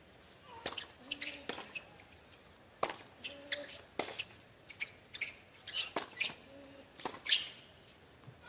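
Tennis rally on a hard court: a string of sharp pops of racket strings on the ball, roughly once a second, with short high squeaks of tennis shoes on the court between the shots.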